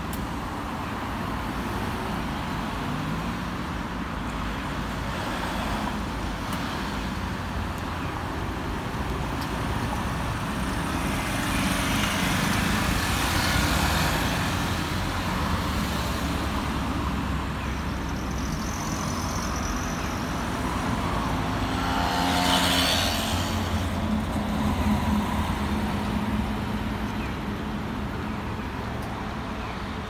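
Road traffic: cars driving past close by with a steady low engine and tyre rumble, two passing vehicles swelling louder, one about halfway through and one about three quarters of the way in.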